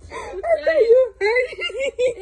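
A woman's high-pitched voice, wordless and wavering, coming in several short breaks, like a whimpering laugh.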